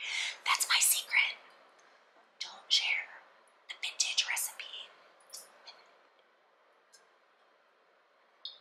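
A woman whispering in a few short phrases with pauses between them, trailing off after about five seconds.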